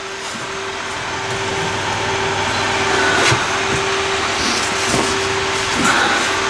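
A steady machine hum with a rush of moving air that grows louder, and a couple of light knocks as a plastic plant pot is handled.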